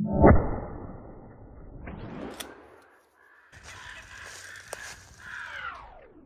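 A 12-gauge pump shotgun fires once about a quarter second in, the loudest sound, its report fading over the next second or two. After a short break, crows call.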